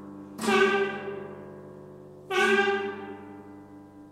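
Prepared guitar struck hard twice, about two seconds apart, shortly after the start and just past halfway. Each blow sets its strings ringing in a dense, bright chord that slowly dies away.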